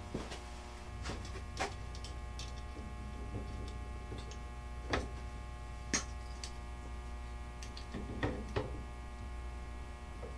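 Guitar fret wire being snipped to length with hand wire cutters: several sharp clicks spread out with pauses between them, over a steady electrical hum.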